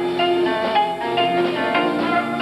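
High school jazz big band playing live: horns holding chords that shift every half second or so, with plucked strings underneath.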